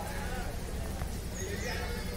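Faint, distant human voices calling over a steady low background rumble, with a brief high, falling chirp about three quarters of the way in.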